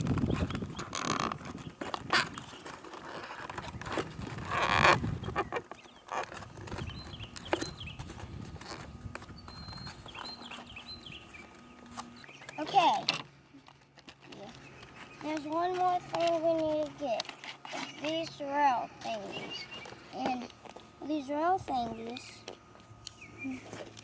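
Cardboard packaging being pulled open and torn, rustling and crackling in bursts through the first half, with a loud rip or snap about 13 seconds in. In the second half a child's voice is heard.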